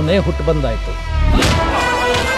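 Film trailer soundtrack: a man's deep voice finishes a dramatic line over a low rumble, then a loud cinematic boom about one and a half seconds in, followed by ringing tones.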